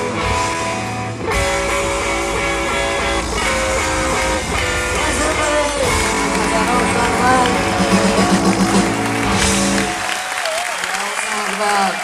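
Live rock band playing the final bars of a song, with electric guitars trading lines over bass and drums, taped from the hall. About ten seconds in the bass and drums stop, leaving guitar notes ringing out.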